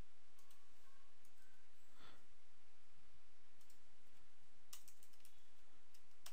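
A few scattered computer keyboard keystrokes, with a quick run of several about five seconds in, over a faint steady hiss.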